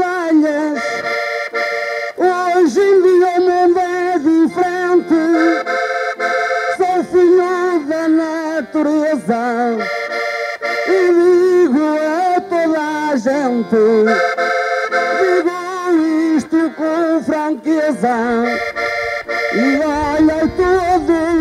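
Accordion playing a traditional Portuguese melody with chords, the instrumental break between the improvised sung verses of a desgarrada.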